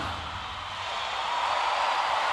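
Large arena crowd cheering and applauding just after the song ends, a steady wash of noise that grows a little louder after the first half-second.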